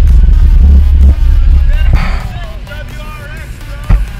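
Loud, deep rumble of a car engine and exhaust close by, heaviest for the first two seconds and then easing as people's voices come through, with a sharp knock just before the end.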